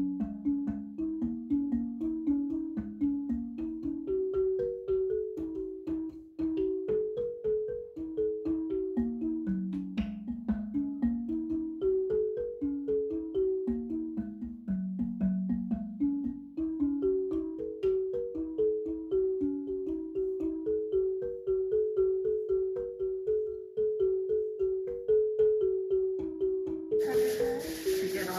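Background marimba music: a melody of quick struck notes stepping up and down. A burst of noise comes in near the end.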